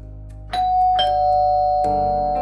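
Electric doorbell chiming two notes, ding-dong: a higher tone about half a second in, then a lower one half a second later, both ringing on over soft background music.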